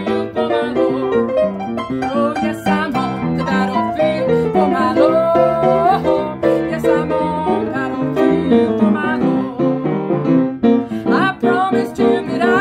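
Gospel band music in an instrumental passage: piano with plucked strings. A sliding, wavering melody line comes in about five seconds in, and again near the end.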